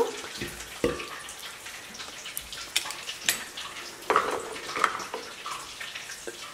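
Lime juice squirting and dripping into an empty glass blender jar as a metal hand-held lime squeezer is pressed, with a few light clicks and knocks from the squeezer and jar.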